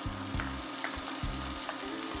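Diced pancetta sizzling steadily in hot olive oil in an enamelled Dutch oven, stirred with a wooden spoon.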